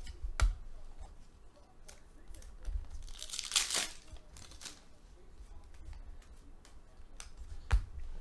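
Foil trading-card pack being torn open: a rip about three seconds in lasting nearly a second, then a shorter crinkle, with light taps of cards being handled.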